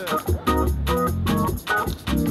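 Hammond organ played live in gospel style: choppy chord stabs and quick upper-register runs, with brief drops between phrases.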